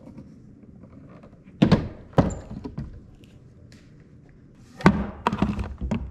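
Suitcase-style portable record player being set down and handled on a wooden cabinet: a few hard thunks of the case on the wood, about a second and a half in, again at two seconds, and loudest near the end, followed by a few lighter clicks.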